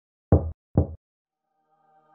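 Two heavy knocks on a door, about half a second apart, deep and short. A faint held chord starts to fade in near the end.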